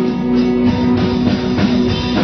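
Live pop-rock band music: electric guitar and drum kit playing steadily, with sustained chords.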